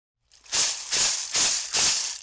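A rattle or shaker shaken four times in an even beat, starting about half a second in and trailing off after the last shake.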